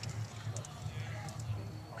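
Faint voices in the background over a low steady hum, with a few faint light clicks; no blows land.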